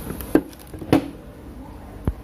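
A few short knocks and clicks, two of them louder, as a set-top box and its cables are handled and set down.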